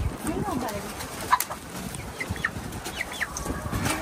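A flock of chickens clucking and chirping, with a sharp click about a second in.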